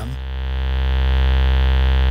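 ModBap Osiris digital wavetable oscillator holding a steady low-pitched drone rich in overtones, swelling slightly over the first second.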